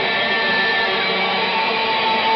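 Heavily distorted electric guitar holding sustained notes: a high note that ends about a second in, then a lower note held.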